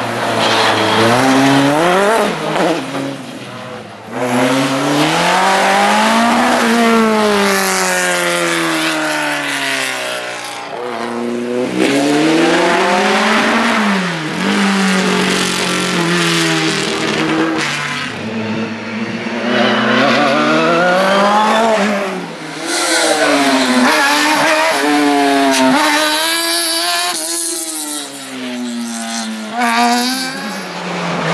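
Single-seater formula race car engines revving high and dropping again over and over, accelerating and braking hard between slalom gates.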